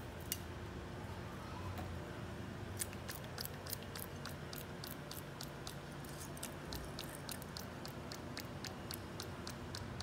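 Quiet, evenly spaced light ticks, about three a second, starting about three seconds in, over a low steady hum.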